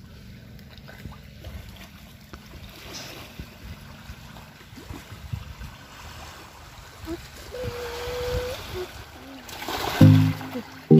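Wind rumbling on the microphone over the gentle lapping of calm, shallow sea water at the shore, the water sound swelling a little near the end.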